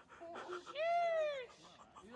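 A single high-pitched drawn-out vocal cry, rising and then falling in pitch, lasting a little over half a second about three-quarters of a second in.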